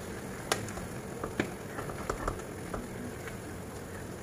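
Apple slices cooking in butter and brown sugar in a frying pan, a low steady sizzle with a few scattered small pops and ticks.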